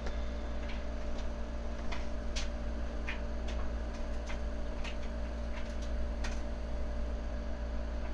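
Light, irregularly spaced clicking taps of fingertips on an iPad touchscreen, about a dozen in all, over a steady electrical hum.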